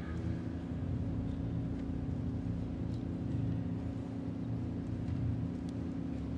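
Pipe organ holding sustained low chords, the notes shifting slowly.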